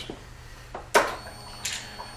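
A sharp click about a second in as the motorcycle's ignition is switched on, with a couple of softer clicks around it. Just after it a faint, steady high-pitched whine begins.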